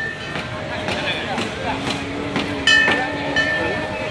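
A metal bell struck twice, about three seconds apart, each strike ringing out high and clear before fading, over the chatter of a crowd.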